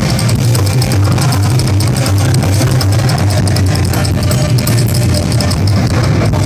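A live psychobilly band playing loudly: a coffin-shaped upright bass carries a heavy, steady low end under drums and cymbals.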